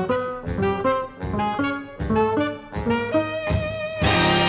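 Big-band jazz recording: the saxophone and brass section playing a run of short, separated notes.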